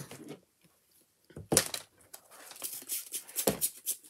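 Craft supplies being handled and tidied on a work table: a sharp scrape about a second and a half in, then irregular rustling, scraping and light knocks.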